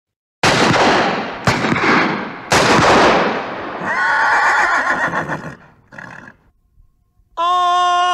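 Three gunshots about a second apart, each with a long echoing tail, followed by a horse whinnying. A held musical note begins near the end.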